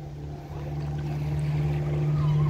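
An engine running at a steady pitch, getting gradually louder from about half a second in.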